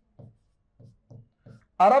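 A pen writing on a wall-mounted display board: four or five short, faint strokes as a short word is written, then a man's voice begins near the end.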